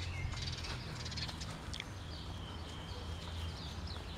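Birds chirping in short, high calls, with a thin held note about halfway through, over a low steady rumble.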